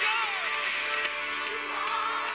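Live band music with an electric guitar being strummed.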